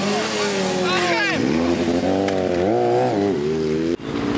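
Sport motorcycle engine revving through a smoky burnout. It holds a steady pitch, climbs about a second and a half in, climbs again, then drops back near the end.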